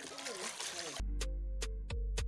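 Hands swishing leafy vegetables in a basin of water, with a splashing sound and a voice faintly behind it. About a second in, this cuts off abruptly and background music takes over, with deep bass and sharp clicking beats.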